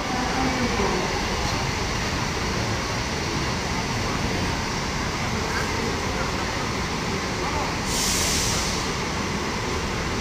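Intercity buses' diesel engines running as the buses move off, a steady rumble, with a short hiss about eight seconds in.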